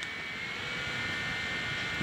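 Handheld portable fan running on a high speed setting: a steady whir of rushing air with a thin, high motor whine over it.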